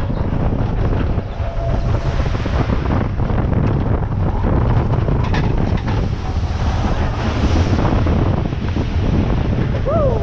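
Bobsled coaster car running fast on tubular steel track: a loud, steady low rumble with rattles from a rough ride, mixed with wind buffeting the microphone.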